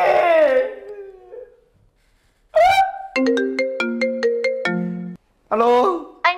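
A man's tearful wail trails off, and after a short silence a mobile phone ringtone plays a quick electronic melody of about ten notes for two seconds, then cuts off suddenly: an incoming call being answered.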